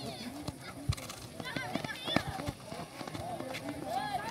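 Players and spectators calling and shouting during a futsal match, with a few sharp knocks of the ball being kicked on the concrete court.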